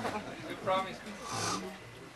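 Quiet lull with brief human voices: a short spoken sound a little before a second in, then a low hum about a second and a half in.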